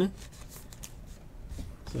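A trading card being handled and slid into a soft plastic sleeve by hand: light, irregular rustling and scraping of card and plastic.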